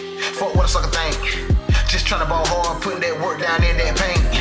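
Hip hop track with a male voice rapping over a beat of deep bass kicks that drop in pitch, three of them, and sustained keyboard notes.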